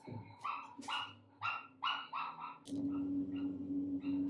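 A dog barking: about six short, high yaps in quick succession, then a steady low hum takes over near the three-second mark.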